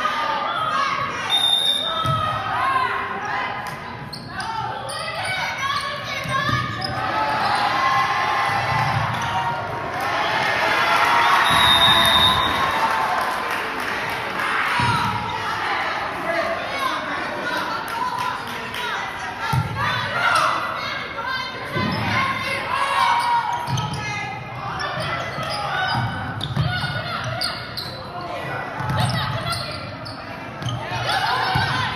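Basketball game in a gym: voices of players and spectators echo through the hall while a basketball bounces on the hardwood floor in repeated low thumps. Two brief high-pitched chirps cut through, about 2 s and 12 s in.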